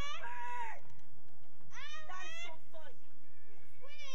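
A young child's high-pitched wordless squeals or calls, three of them: one ending about a second in, a longer one that swoops up and down in the middle, and another beginning near the end.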